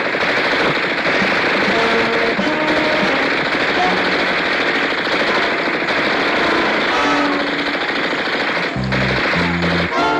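Sustained automatic gunfire, a continuous loud barrage of film sound effects, with dramatic music playing underneath and low notes sounding near the end.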